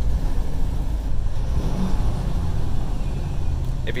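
Semi truck's diesel engine and road noise heard from inside the cab, a steady low rumble, while the truck slows on adaptive cruise and its automated transmission downshifts from eighth toward fifth gear.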